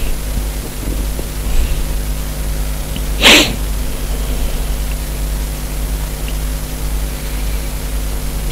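Steady low electrical hum and hiss in the background, broken once about three seconds in by a short, sharp burst of breath noise from a person, like a sniff or small sneeze.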